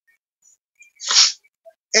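A man's single short, breathy sneeze about a second in.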